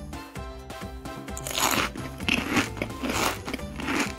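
Crunchy eating sound effect, about four bites in quick succession in the second half, over light background music.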